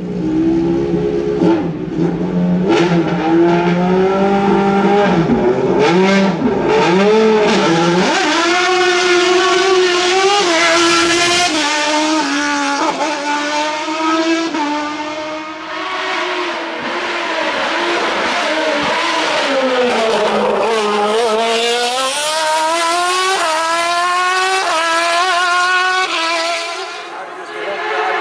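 Single-seater hill-climb race car engine, loud, at first holding revs with a few throttle blips. It then accelerates hard through the gears, the pitch climbing and dropping back at each shift. About two-thirds through the revs fall low and climb again.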